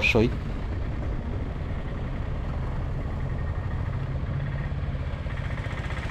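Auto-rickshaw engine running steadily as the three-wheeler drives, heard from inside its open cabin as a low, even drone.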